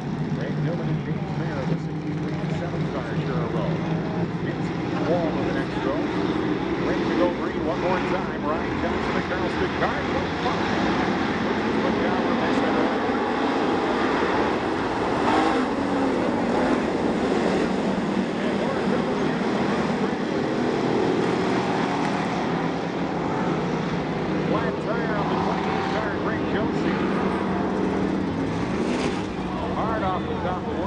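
A field of WISSOTA Street Stock race cars' V8 engines running together around a dirt oval as the pack takes the green and races, the engine notes rising and falling as the cars pass.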